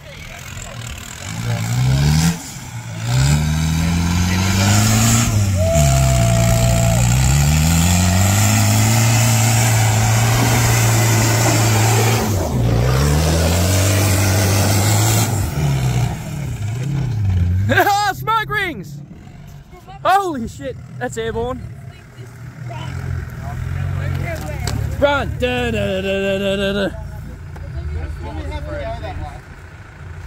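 Land Rover Discovery engine revving hard, its pitch rising and falling over and over as it pushes through deep mud, then dropping away after about fifteen seconds. Shouting voices follow in the second half.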